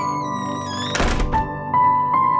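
Soft background score with sustained keyboard notes; a rising sweep builds over the first second and ends in a single heavy hit, a dramatic music sting.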